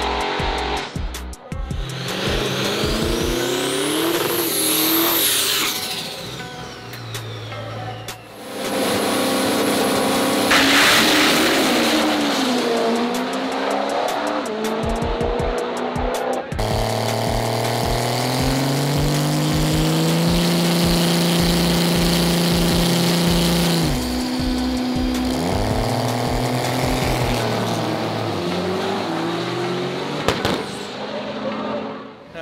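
Diesel drag-racing trucks revving and running down a drag strip, with a high whine that rises and falls a few seconds in and a long held engine note past the middle. Background music with a steady beat plays under the engines.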